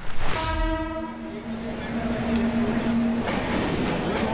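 Train horn sounding on a railway platform: a higher note for about a second, then a lower note held about two seconds that cuts off abruptly.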